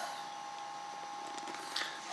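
Steady low hiss of room noise, with faint handling sounds near the end.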